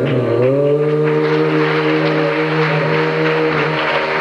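Live Hindustani classical ensemble music: a long held note sounds throughout, and from about a second in it is overlaid by a dense, fast patter of many small strikes.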